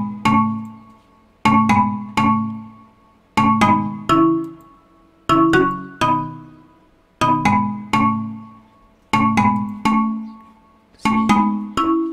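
A synthesized marimba (Steinberg Hypersonic's bright percussive marimba patch) playing a looping one-bar phrase of struck chords at 125 BPM. The phrase repeats about every two seconds, with a few more notes near the end.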